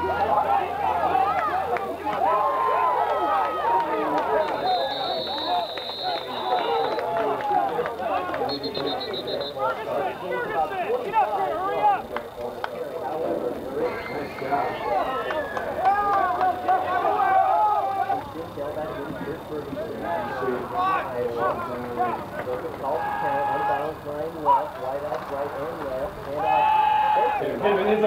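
Many voices talking and calling out at once from football players and coaches on the sideline, none of it clear speech. Two short, high, steady tones sound about five and nine seconds in, like whistle blasts.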